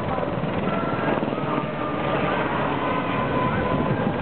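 Westland Sea King military helicopter flying a display pass, its rotor and turbine engines running steadily.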